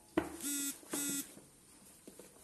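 A knock, then two short buzzy electronic beeps of equal pitch, each about a third of a second long and about half a second apart.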